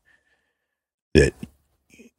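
Near silence, then a man saying one short, clipped word about a second in.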